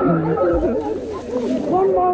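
A group of children shouting and whooping over one another while splashing through pool water.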